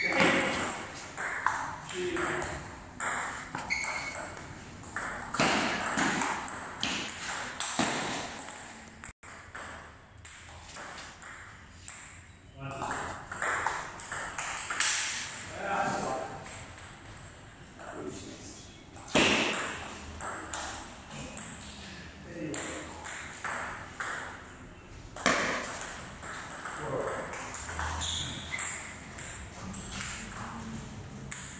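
Table tennis rallies: the ball clicking back and forth off the paddles and the table in quick runs, with short pauses between points.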